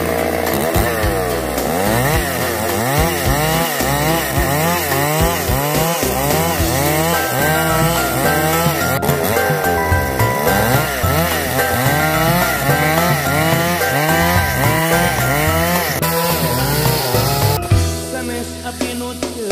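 Two-stroke chainsaw running hard while cutting wood, its engine pitch rising and falling again and again as the load on the chain changes. Background music plays underneath.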